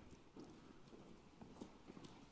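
Faint footsteps of men walking across a stage: a few soft, irregular steps against near silence.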